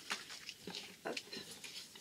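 Paper and card cut-outs rustling as they are handled and set down, in a few short bursts.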